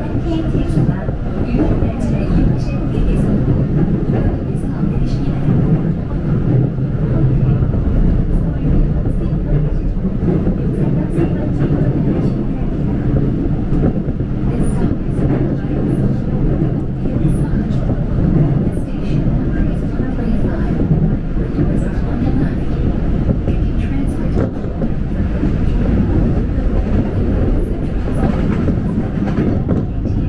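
Seoul Subway Line 1 electric commuter train running steadily on the track, heard from inside the passenger car as a continuous low rumble with faint scattered clicks.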